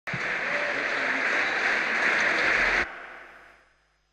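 Audience applauding in a large hall. The clapping cuts off abruptly just under three seconds in, leaving a short fading echo.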